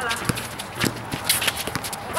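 Pickup basketball on an outdoor concrete court: a ball bouncing and sneakers slapping the concrete as players run, as a scatter of sharp knocks, with players' voices.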